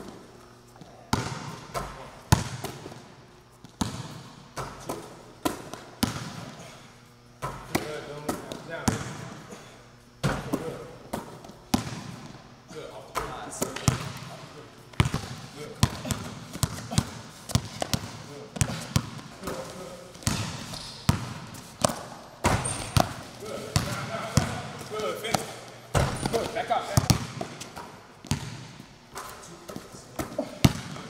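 Basketball bouncing repeatedly on a hardwood-style gym floor during dribbling drills: sharp bounces at an uneven pace, some in quick runs, others spaced out.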